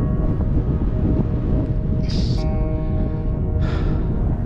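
Background music of held, sustained notes over a low rumble of wind on the microphone, with two short breathy hisses about two seconds and three and a half seconds in.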